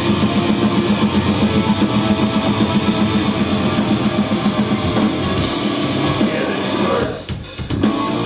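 Live heavy rock band playing: distorted electric guitar and drums in a heavy riff. The music drops out briefly about seven seconds in, then the band comes back in.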